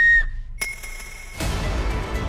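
A child blowing a small toy whistle: one steady high note that cuts off about a quarter second in. Soft background music follows from a little over a second in.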